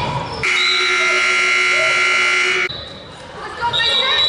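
Wrestling scoreboard timer buzzer sounding one loud, steady blast of a bit over two seconds that starts about half a second in and cuts off suddenly, signalling time expiring in the wrestling period.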